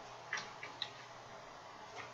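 Three quick, light clicks of a computer mouse, close together, over faint room hiss.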